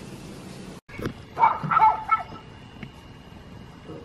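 A dog barking: a short run of barks about a second and a half in.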